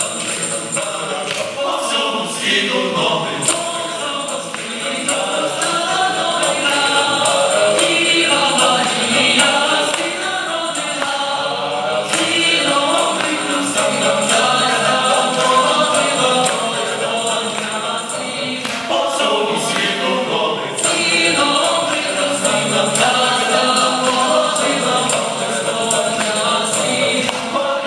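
Mixed choir of men's and women's voices singing a Ukrainian Christmas carol a cappella, in several-part harmony.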